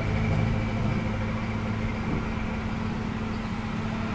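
A steady low machine hum, even and unchanging throughout.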